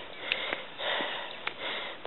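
A person breathing close to the microphone, a soft hiss that swells and fades, with a few faint clicks.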